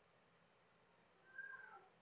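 Near silence, then one faint, brief cry about a second and a half in, falling in pitch.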